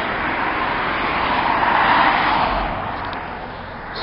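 Road traffic noise: the rush of a car driving past swells to a peak about two seconds in, then fades.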